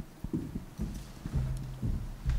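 Handling noise from a handheld microphone being carried: a series of low thumps and knocks with brief low rumbles.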